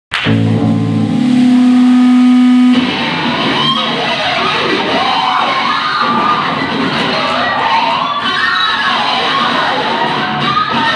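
Live rock band with electric guitars, bass and drums, loud and distorted. A loud held note rings for the first couple of seconds and cuts off sharply, then the full band plays on with wavering, sliding pitches over the noise.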